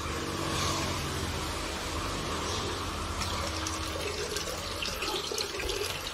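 Steady water noise over a low hum. Near the end, liquid water sanitizer is poured from a plastic bottle into a bucket of water, splashing.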